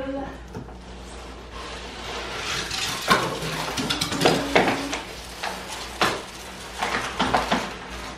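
Large cardboard mirror box being slid and shifted against a wall and floor: irregular scraping and rustling of cardboard with several sharp knocks, busiest in the middle and latter part.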